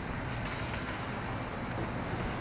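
Steady hiss and low rumble of a large church's room tone, with a brief faint rustle about half a second in.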